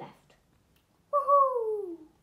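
A single drawn-out vocal cry, starting about a second in and falling steadily in pitch for just under a second.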